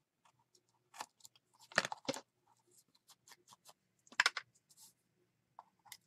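Paper being handled and glued down: a brush dabbing glue and fingers pressing and sliding a paper strip into place, heard as scattered small clicks and rustles. They are loudest about two seconds in and again just after four seconds.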